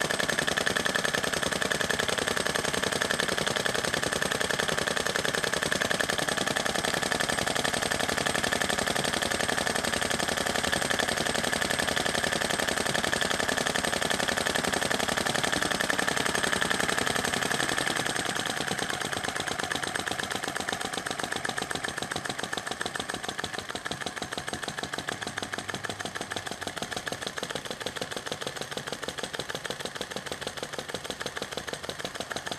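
Sai Hu SH-02 flame-licker vacuum engine running fast, with a rapid, steady clatter from its valve gear and flywheels, running as delivered with no timing or other adjustments. About eighteen seconds in the clatter becomes noticeably quieter and carries on at the lower level.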